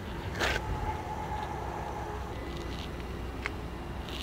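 Low, steady background rumble with a brief rustle about half a second in and a single faint click near the end.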